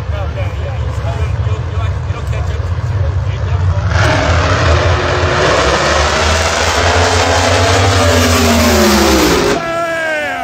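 Drag racing cars making a pass at full throttle. A low rumble runs for the first few seconds, then the engines come in loud about four seconds in, their pitch rising and then slowly falling as the cars run down the strip. The sound cuts off abruptly just before the end.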